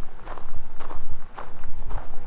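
Footsteps on a gravel and dry-grass trail, about two to three steps a second, over the steady low rumble of freeway traffic.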